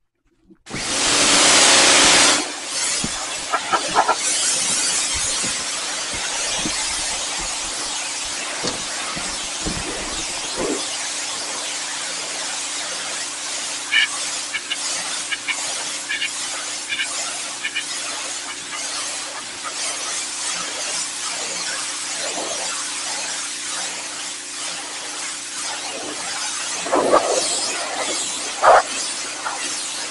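Pressure-washer jet spraying onto a fiberglass boat hull, blasting off green algae and lichen. It makes a loud, continuous hiss that starts about a second in and is loudest over the first couple of seconds, with a faint steady hum underneath.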